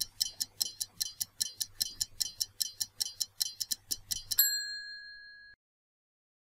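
Stopwatch countdown-timer sound effect ticking rapidly, about five ticks a second, then a single bell ding about four seconds in that rings briefly, signalling that time is up.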